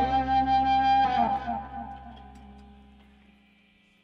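A band's last guitar chord held, then let go about a second in and left to ring out, fading steadily to near silence.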